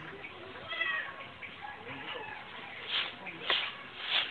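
A short animal call about a second in, then a few scratchy strokes of a short grass broom across a dirt yard near the end.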